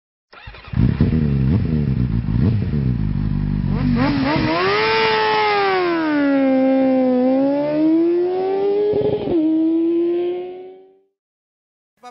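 Engine-revving sound effect: an engine note with several quick revs for about four seconds, then a smoother tone that rises, dips, climbs again and holds before fading out about a second before the end.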